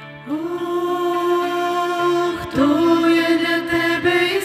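Female vocal trio singing long held notes in harmony over piano. The voices come in about a quarter of a second in after a piano passage, and a new held note starts a little past halfway.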